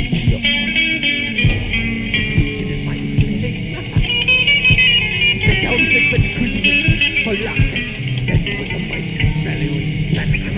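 Instrumental passage of a lo-fi home-recorded thrash metal song: electric guitar riffing over bass and drums, captured on a four-track cassette recorder. The playing is continuous and dense, with a repeated high guitar figure and steady drum hits.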